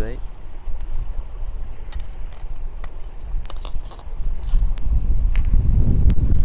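Wind buffeting the microphone as a low rumble that grows stronger over the last second and a half, with scattered light clicks and taps.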